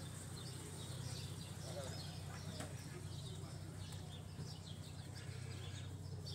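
Quiet outdoor street ambience: faint bird chirps over a steady low hum, with faint voices in the distance.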